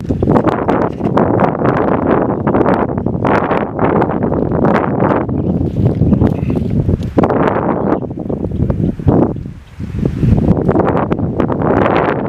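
Wind buffeting the microphone in gusts, a rough, uneven rumble that eases briefly about nine and a half seconds in.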